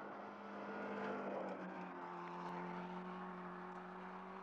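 A car engine running steadily with a low drone that drops a little in pitch about halfway through.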